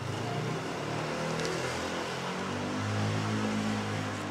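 A motor vehicle's engine running in the street and accelerating, its low pitch slowly rising and growing louder toward the end.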